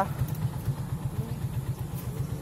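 Vehicle engine running at low speed, a steady low throb.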